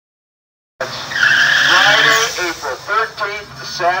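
Sound cuts in under a second in with a car's tyres squealing for about a second at the drag strip's starting line, followed by a man talking over the track's public-address system.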